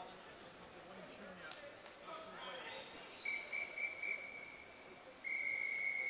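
Swimming referee's whistle: a few short blasts about three seconds in, then a long steady blast from about five seconds in. This is the start signal for a backstroke race, short whistles to get the swimmers ready and the long whistle calling them into the water.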